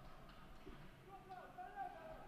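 Faint ice-rink ambience with distant voices, one voice calling out briefly in the second half.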